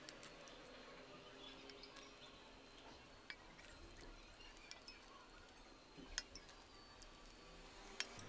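Faint, scattered crackles and a few small clicks as cold sugar syrup is ladled over hot, freshly baked baklava. The clicks are a little louder about three, five and six seconds in.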